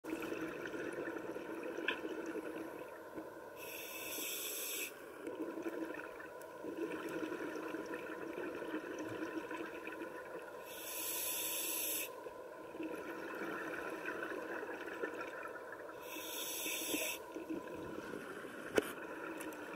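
A scuba diver breathing through a regulator underwater, three breaths about six seconds apart. Each breath is a short, sharp hiss of inhalation followed by a longer, duller bubbling as the exhaled air escapes.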